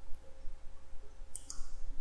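Two quick computer mouse clicks about a second and a half in, over faint steady background hum.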